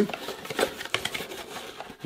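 Small cardboard mailer box being opened by hand and a boxed figure slid out of it: irregular scraping and rustling of cardboard with small taps and clicks.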